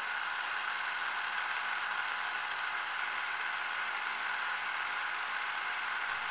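A steady, high-pitched whirring hiss with faint even tones running through it.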